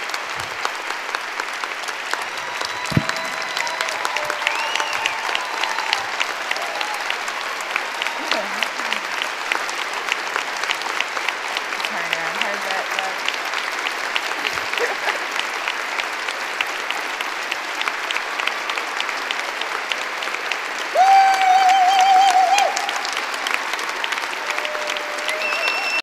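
Theatre audience applauding steadily, with scattered shouts. About 21 seconds in, one loud wavering call rises over the clapping for a second and a half.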